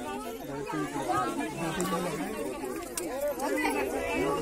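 Crowd chatter: several people talking at once, with no single voice standing out.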